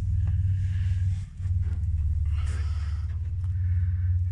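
A steady low rumble with a brief dip a little over a second in. Faint scattered rustles sit above it.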